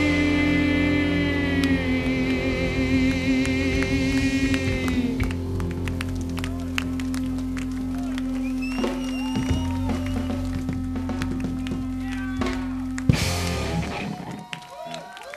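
Live rock band letting the last chord of a song ring out: a wavering guitar chord fades after about five seconds, a low note rings on under scattered drum and cymbal hits, and a final loud crash comes about a second before the end.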